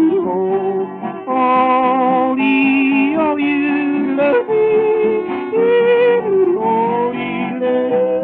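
A man yodelling, without words, over guitar accompaniment on a 1933 78 rpm shellac record. The voice leaps and slides between notes every second or so. The sound is thin, with no top end.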